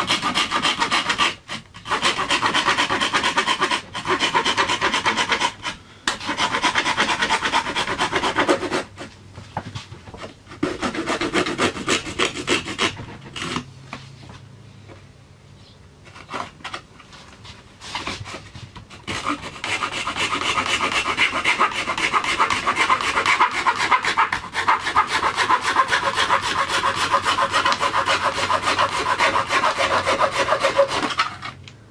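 Hacksaw blade sawing through cured fibreglass cloth and resin: rapid rasping strokes in runs of a few seconds with brief pauses. The sawing goes patchy and quieter for about ten seconds in the middle, then runs steadily through the last third.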